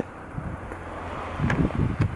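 Wind blowing on the microphone, a steady low rush, with one click about one and a half seconds in.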